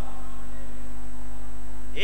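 Steady electrical mains hum from the microphone and sound system: a low drone with a few fainter steady higher tones above it.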